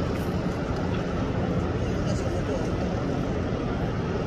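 A steady, even noise, mostly low in pitch, with indistinct voices mixed in.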